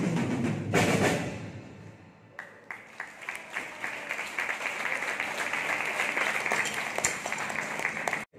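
Two drum kits end a piece with a final hit and cymbals ringing down, then audience applause starts about two and a half seconds in and keeps going.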